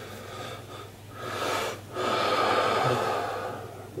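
A man breathing heavily close to the microphone: a short breath about a second in, then a longer one of nearly two seconds.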